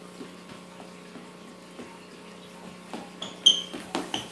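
A faint steady hum with light scattered clicks, then, from about three seconds in, a few sharp clinks of small hard objects, each ringing briefly.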